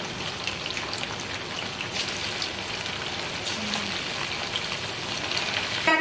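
Julienne-cut boneless chicken strips deep-frying in hot oil in an aluminium wok: a steady sizzle with fine crackling, the chicken being fried half-done.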